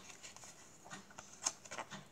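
Faint handling of double-backer playing cards: a few soft ticks and slides as the cards are spread out on a cloth close-up mat.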